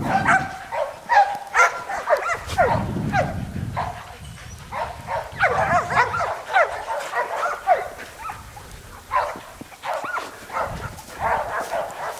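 Australian Shepherds barking and yipping again and again in short, high calls while playing with a ball.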